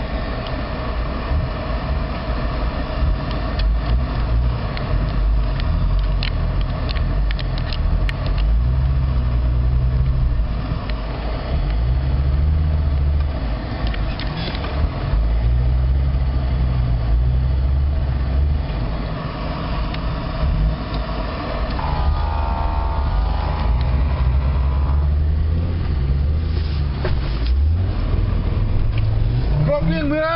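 Off-road 4x4's engine heard from inside the cabin while driving over a rough rocky track, its revs rising and falling, with a few sharp knocks from the vehicle jolting over the rocks.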